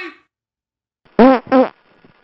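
Two short, loud fart sounds in quick succession, a little over a second in, each with a clear pitch.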